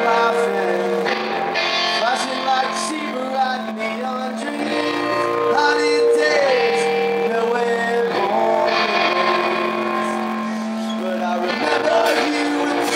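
A punk rock band playing live: a male voice singing long held notes over a hollow-body electric guitar.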